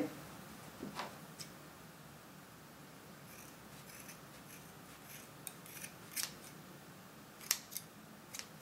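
Large sharp scissors snipping through a gathered bunch of tulle ribbon ends to trim them even. The cuts are quiet, short and irregular, some in quick pairs, with pauses between them.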